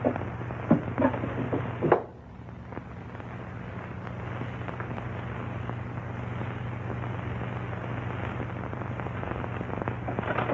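Paper wrapping crackling and rustling as it is handled, in several sharp bursts over about two seconds, then it stops; after that only the steady hiss and low hum of an old optical film soundtrack remain.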